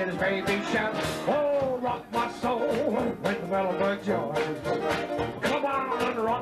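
Frisco-style traditional jazz band playing, with a male voice singing over a rhythm section of banjo, piano, sousaphone and drums, with trombone and soprano saxophone.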